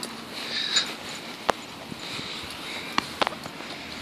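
A few sharp clicks and soft handling noise from a dog's lead and collar being handled, with two clicks close together near the end, over a faint steady outdoor background.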